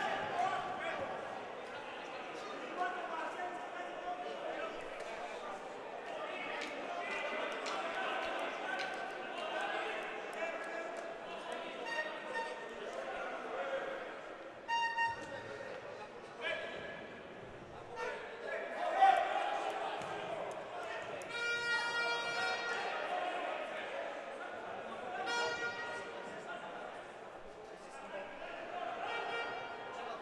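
Sound of an indoor minifootball match echoing in a large hall: players' shouts and spectators' chatter, with scattered thuds of the ball being kicked on the artificial turf. The loudest is a shout about nineteen seconds in.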